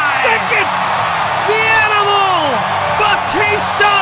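Excited wordless vocal exclamations, drawn-out rising-and-falling "ooh" and "whoa" calls, over background music.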